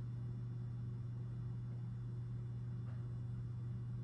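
Steady low electrical hum from a powered-on pinball machine, an unchanging drone with no rise or fall.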